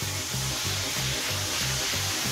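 A frying pan flaring up in big flames on a stove burner: a steady hiss of fire and sizzling oil. Background music with a pulsing bass beat runs underneath.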